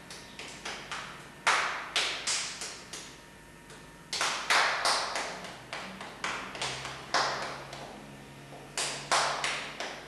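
A child's hands striking in quick, irregular bursts of sharp slaps, three to five at a time, each with a short ring.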